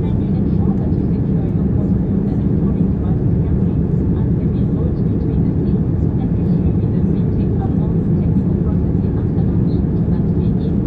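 Steady drone of a jet airliner's engines and airflow heard from inside the passenger cabin in flight: an even, deep rumble that does not change.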